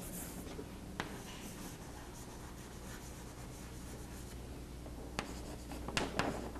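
Chalk on a blackboard: faint scratching at the start, a sharp tap about a second in and another near the end, then chalk strokes as writing resumes. A steady low hum runs underneath.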